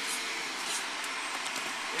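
Steady airy background hiss of the practice room, with a few faint rustles of movement as the partners grapple.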